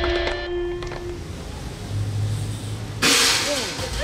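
The tail of the rock soundtrack with one held note fading in the first second, then quiet outdoor background. About three seconds in a sudden loud burst of noise comes in, and spectators start shouting and cheering.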